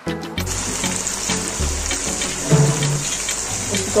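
Chicken leg pieces and sliced onions frying in hot oil in a wok, a steady crackling sizzle that sets in about half a second in, with background music underneath.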